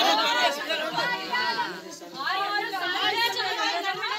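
Several people talking at once: overlapping chatter, with a brief lull about halfway through.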